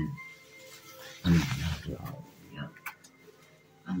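Family voices at close range: a loud, short vocal outburst about a second in, followed by quieter scattered voices.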